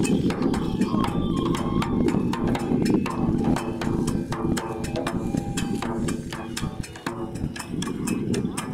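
Kagura music: a taiko drum and struck percussion beating a fast, steady rhythm, with a flute line heard at times.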